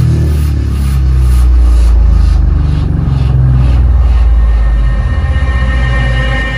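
Electronic dance music played loud through a karaoke combo driven by a pair of Weeworld S1500 40 cm subwoofers: a long, deep, sustained bass note dominates, swelling in the middle and easing near the end.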